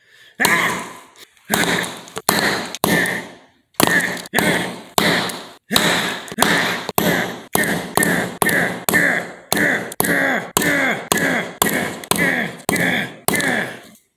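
A rubber tyre thudding down again and again onto a small red plastic Scotchlok wire-tap connector on a concrete floor, some two dozen heavy thuds at about two a second, each ringing briefly. The connector holds up under the blows: these are strong.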